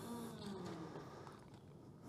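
A short pause in speech: quiet room tone in a hall, with faint traces fading away over the first second or so.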